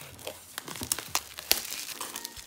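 Plastic shrink wrap crinkling and crackling in quick, irregular crackles as it is peeled off a boxed album, with one louder snap about a second and a half in.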